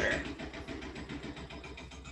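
Pencil scratching rapidly back and forth on paper in quick, even shading strokes, over a steady low hum.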